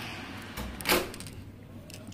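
A few soft knocks and clicks in a quiet room, the loudest about a second in.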